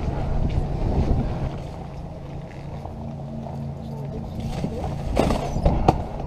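Low, steady motor hum under a rumbling noise, with a louder burst of noise near the end.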